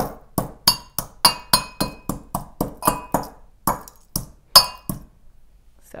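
Brass mortar and pestle pounding whole cardamom pods: the pestle strikes the metal bowl about three times a second, each strike ringing briefly. The pounding stops about five seconds in.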